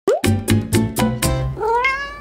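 Short channel-intro jingle built on a cat's meows: a brief rising meow, then five quick musical beats about four a second, then a longer rising meow that fades away.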